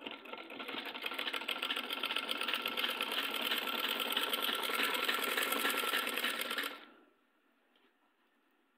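Sewing machine stitching at a steady fast rate, then stopping suddenly near the end.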